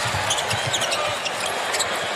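A basketball being dribbled on a hardwood court over steady arena crowd noise, with a few short high sneaker squeaks.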